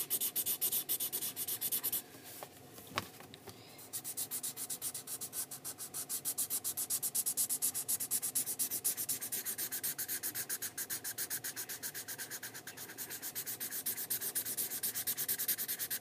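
Sharpie permanent marker scribbling on sketchbook paper, colouring in a solid area with quick, even back-and-forth strokes, about five a second. The strokes pause for about two seconds near the start, with a single click, then carry on.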